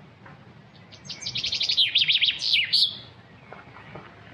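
A songbird singing one fast phrase of quick, high, up-and-down notes, starting about a second in and lasting around two seconds.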